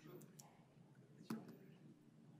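Near-silent room tone with a few faint clicks near the start and one sharper click a little past halfway.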